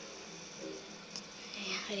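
A young girl's voice: a short hesitant 'ee' and the start of a word near the end, over faint steady room sound.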